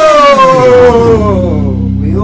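A singing voice slides down in pitch in one long falling call, the 'big fall down' that ends the song. A low held note comes in under it about a second in.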